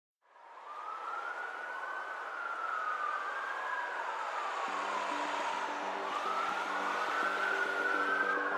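Police siren wailing in a slow rise and fall over a hiss, fading in at the start. Low synth notes come in about halfway through as the track's intro builds.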